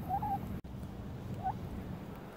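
A hen giving two short, soft calls while being petted, one just after the start and a shorter, slightly rising one about a second and a half in.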